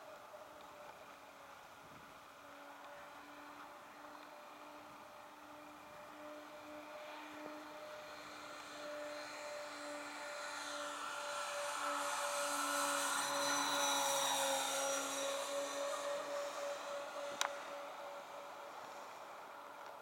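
Radio-controlled Hangar 9 Twin Otter model airplane's twin propellers droning steadily overhead, growing louder with a rising high whine as it makes a low pass, dipping slightly in pitch as it goes by, then fading as it climbs away. A single sharp click near the end.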